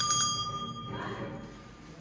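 Small hanging metal bell rung by hand on its chain, several quick strikes that ring out with a clear high tone and fade away about a second in.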